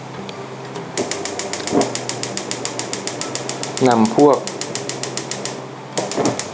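Gas stove's spark igniter clicking rapidly and evenly while the burner knob is held to light it.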